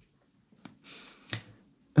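A few light clicks of computer keyboard keys as letters are typed, the loudest about two-thirds of the way through, with a faint short hiss between them.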